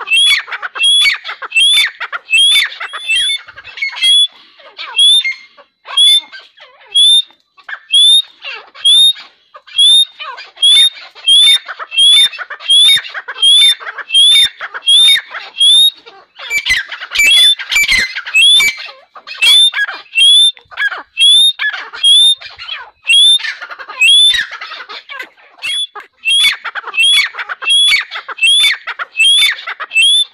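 Young Dakhni teetar (grey francolin) calling over and over, a fast run of short, rising, high notes about two a second, with busier stretches of calling about halfway through.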